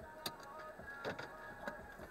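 Three sharp clicks and knocks of a drinking bottle being handled as it is tipped up to drink and lowered, over faint music.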